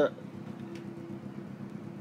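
A steady low machine hum, like a motor or engine running, with no words over it.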